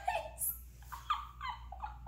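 A woman's soft, high-pitched giggling: a string of short notes that bend in pitch, about a second in.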